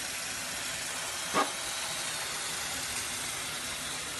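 Kitchen tap running in a steady hiss, its stream pouring onto a sink full of small fish. One brief sharp sound about a second and a half in.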